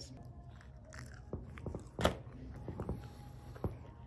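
A person chewing a mouthful of quesadilla: quiet, scattered mouth clicks, with one sharper click about two seconds in.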